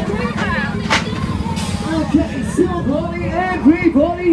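Funfair din: crowd voices and music over a steady low hum, with a single sharp crack about a second in. In the second half, loud voices rising and falling in pitch come over the top.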